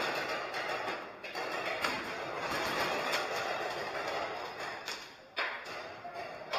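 Paintball markers firing in rapid, irregular pops, echoing in a large hall, with a couple of sharper cracks near the end.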